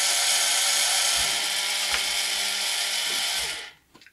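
Two small yellow plastic-gearbox DC motors running together at about 235 RPM, a steady gear whine that cuts off about three and a half seconds in as they are switched off.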